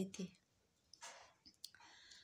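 A woman's speech ends a moment in, followed by a quiet pause holding a soft breath and a few small mouth clicks.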